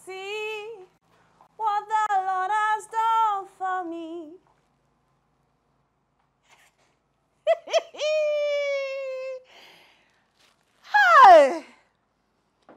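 A woman singing a wordless tune to herself in short held notes, then one long high note, and near the end a loud swooping voice falling sharply in pitch.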